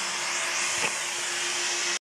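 Steady rushing hiss with a faint steady hum under it, and one brief click just under a second in.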